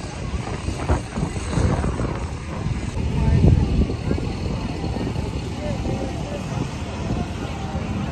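Small compact tractor's engine running as it pulls a train of barrel cars, with people's voices chattering over it.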